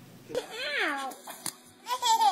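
A baby's short, whiny, meow-like vocal squeal that rises and then falls in pitch, starting about half a second in. A faint click follows, and another child's voice begins at the very end.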